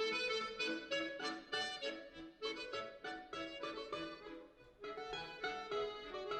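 Balalaika and piano accordion playing a folk-style duet: quick, repeated balalaika plucks over held accordion chords, with a short lull about three-quarters of the way through before both come back in.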